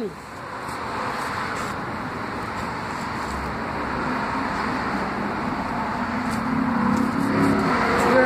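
A motor vehicle approaching on a nearby road: the noise of its tyres and engine swells steadily, and a low engine hum comes in over the second half.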